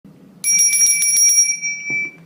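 A small bell rung in a rapid trill, about eight strikes a second for a second, then ringing out and fading away.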